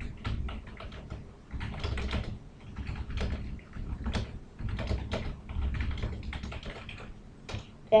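Typing on a computer keyboard: quick, irregular runs of keystrokes.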